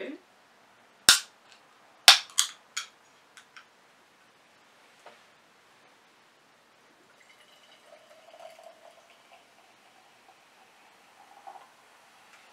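Aluminium can of carbonated ginger beer being opened: a sharp crack of the ring-pull about a second in, then a second crack with a few short snaps and fizz a second later. Later comes a faint soft sound of the drink being poured into a glass.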